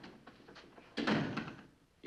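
An interior wooden door being shut, with one louder thud about a second in that dies away quickly.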